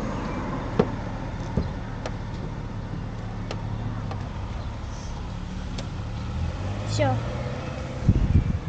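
A few light, sharp clicks as parts are handled in a car's engine bay, over a steady low hum. A short falling tone sounds about seven seconds in.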